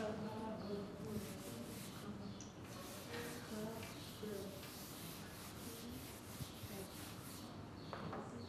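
Pencils scratching on paper as several people write in notebooks, with faint voices now and then.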